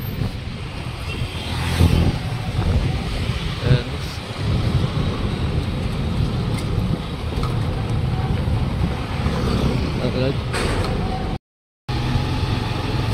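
Steady low rumble of wind on the microphone and a motorcycle running while riding, cut by about half a second of silence near the end.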